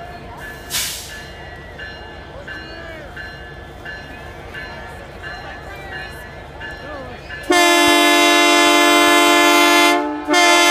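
Locomotive air horn sounds one long, loud blast with several tones at once, starting about three-quarters of the way in, over a crowd's chatter.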